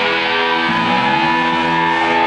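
Distorted electric guitars played live by a heavy metal band, holding a sustained chord while one note bends slowly upward and then holds.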